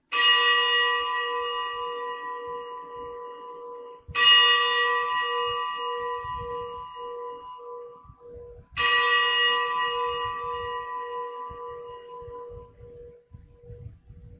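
A bell struck three times, about four to five seconds apart. Each stroke rings on and slowly dies away with a wavering low hum. It is the bell rung at the elevation of the host during the consecration at Mass.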